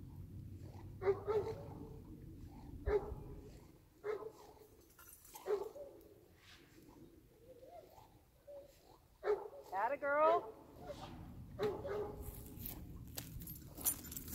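A dog barking in short separate bursts, with one longer, wavering whine about two-thirds of the way through.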